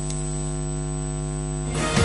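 Steady electrical mains hum with a buzzy stack of overtones. Near the end a rush of noise comes in as the break's music begins.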